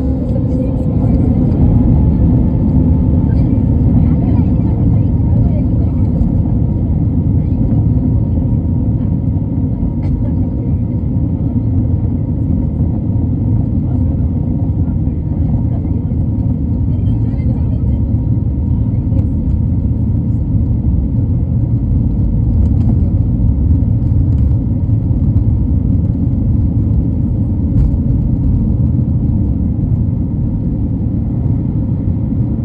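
Jet airliner cabin noise on the ground: a loud, steady low rumble of the engines and the rolling aircraft, with a faint whine rising in the first couple of seconds.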